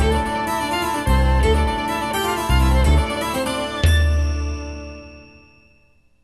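Background music over the end credits: a pitched instrumental tune with a pulsing bass, ending on a final chord that rings and fades away over the last two seconds.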